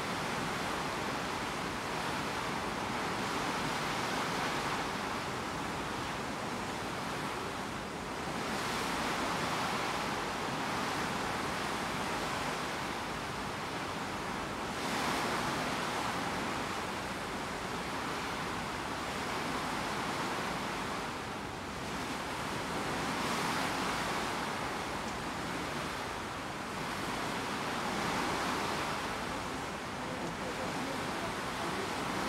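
Steady rush of water and wind as a coastal ship's bow cuts through calm sea, the bow wave spraying along the hull. The noise rises and eases every few seconds.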